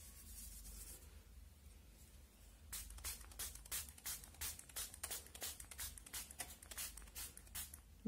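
Hand-held plastic trigger spray bottle squirting water onto powder in quick, repeated short bursts, about three a second, beginning about three seconds in. Before that, faint rubbing of hands through the powder. A low steady hum runs underneath.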